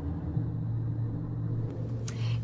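Low rumble, joined about half a second in by a steady low hum that carries on.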